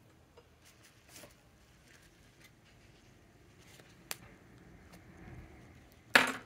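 Near silence: room tone with a few faint desk-handling clicks and one sharp short tick about four seconds in.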